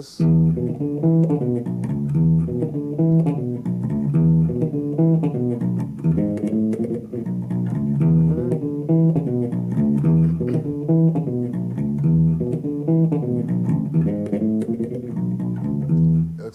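Solo electric bass played fingerstyle: a repeating syncopated line built on a Latin tumbao bass pattern, with extra rhythm and little jazz-style skips across the strings.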